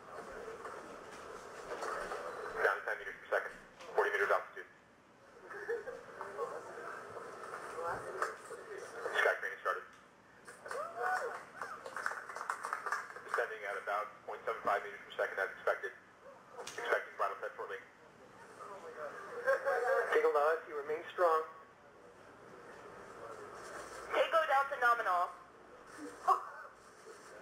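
Spoken callouts on the mission-control voice loop, heard through a narrow, telephone-like channel in short phrases with pauses.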